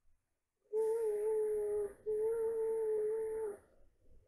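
A young girl moaning in distress: two long, even-pitched wails, each about a second and a half, with a brief break between them.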